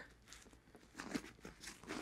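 Faint rustling of hands handling backpack fabric while opening a small pocket, a few soft scuffs mostly in the second half.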